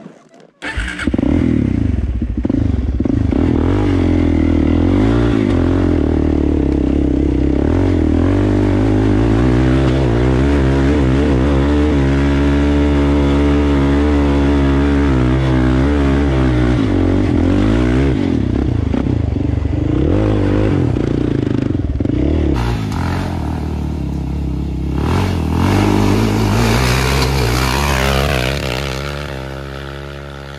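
Sport ATV engine running hard under throttle on a steep shale hill, its pitch rising and falling with the throttle. It comes in suddenly about half a second in and eases off near the end.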